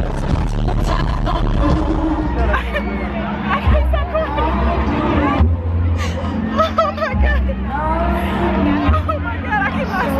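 Live concert music with deep, sustained bass notes, heard from among the audience, under a loud babble of crowd voices.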